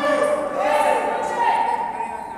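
A high voice holding a sung or chanted note that steps up in pitch about half a second in, echoing in a large gym hall.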